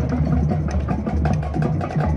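Marching band music: the percussion plays a run of quick, uneven drum strokes over a low held note, with the sustained wind chords dropped out.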